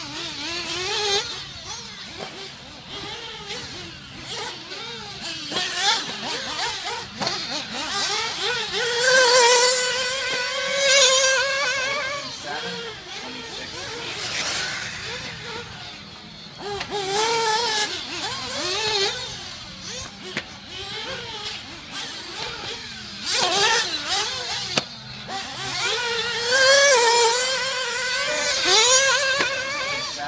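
Several 1/8-scale nitro RC buggies with small glow-fuel engines racing laps, revving up on the straights and dropping off into the corners over and over. The engines swell loudest as cars pass close, about a third of the way in and again near the end.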